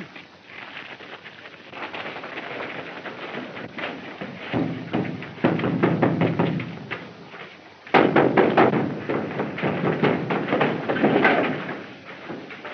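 A fistfight: scuffling and blows landing, with a sudden louder burst of thuds and crashes about eight seconds in.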